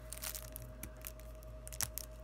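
Plastic shrink wrap on a trading card deck crinkling and crackling as fingers pick at it, in scattered light crackles with a couple of sharper ticks.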